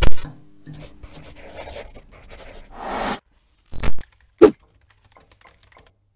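Logo-animation sound effects: a loud hit at the start with a short low hum, a swishing whoosh, then two sharp hits about four seconds in, after which it goes quiet.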